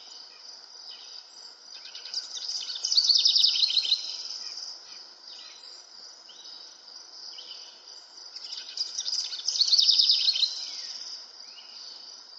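A bird singing two loud trilled phrases of rapid notes, about six seconds apart, over a steady high chirring of insects.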